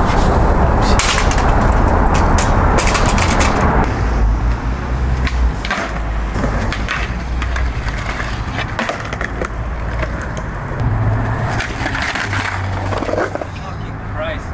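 Skateboard wheels rolling fast over pavement for about the first four seconds, then the board clacking and its trucks grinding along the edge of a concrete ledge, with many sharp knocks.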